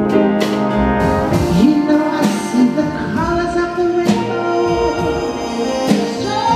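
Live jazz big band playing, its brass section holding chords over the drums, with cymbal strokes about one second and four seconds in.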